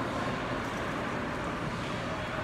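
Steady background hum of a shopping-mall interior, an even wash of noise with no distinct events.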